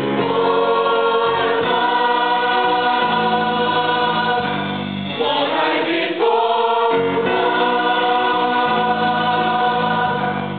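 Mixed high-school choir singing in harmony, holding long chords that change every second or two.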